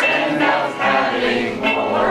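Many voices singing a folk song together: the audience singing along with the performer.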